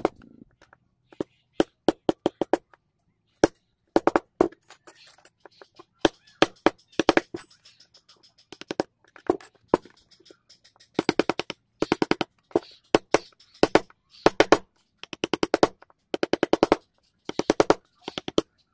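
Wooden mallet striking the handle of a carving chisel cutting into a wooden door panel, in quick runs of sharp taps with short pauses between them.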